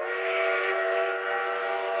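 Train whistle sound effect: a breathy chord of several steady tones that starts suddenly, holds for about two seconds, then fades away.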